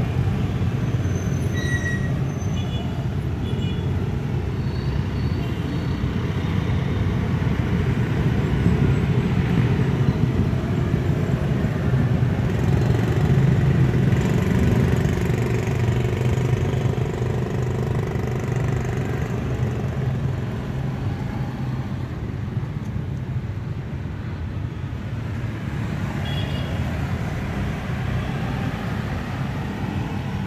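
Steady low rumble of road traffic, with a few brief high-pitched tones early on and again near the end.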